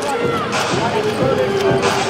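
Basketball being dribbled on a hardwood court, with short knocks and squeaks of play over the voices of the arena crowd.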